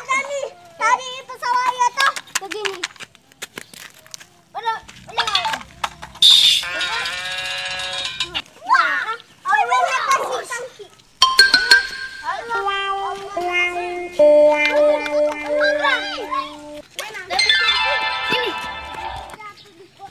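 Children's voices calling out over music; near the middle a series of held notes steps down in pitch.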